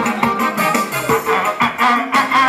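Somali pop band music: a keyboard melody over a steady beat, about two strokes a second.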